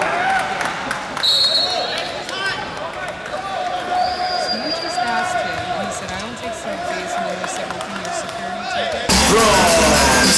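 Basketball bouncing on a hard court amid the chatter of an arena crowd, with two short high whistle blasts. About nine seconds in, loud arena music cuts in suddenly.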